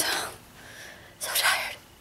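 A woman's short, audible breath through the nose or mouth about a second and a half in, noisy and without voice, in a pause between sentences.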